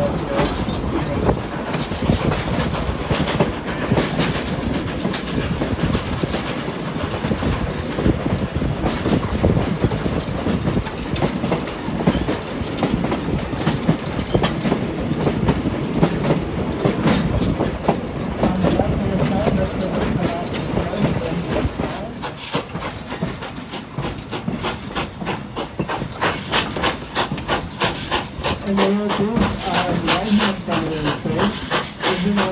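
A passenger coach of a steam-hauled train running along the track: a continuous rumble with rapid clicking and clatter from the wheels, a little quieter in the last third.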